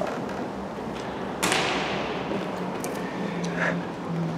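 A single sharp crack about one and a half seconds in, with a long echo dying away around the large hall of an ice arena.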